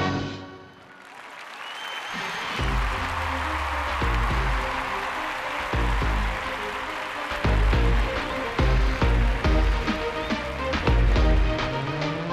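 A sung stage number ends, and audience applause swells through the hall. About two and a half seconds in, recorded music with a heavy, steady bass beat starts and plays under the clapping.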